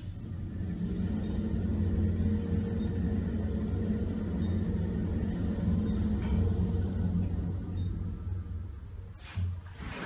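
Richmond traction elevator car travelling upward, a steady low hum and rumble from the machine and the moving car. It eases off near the end as the car slows to a stop, then a short rush of noise follows.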